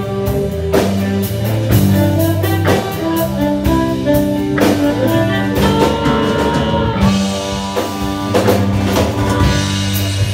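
Live blues-rock band playing an instrumental break: electric guitars, bass and drum kit, with a harmonica playing long held notes over them.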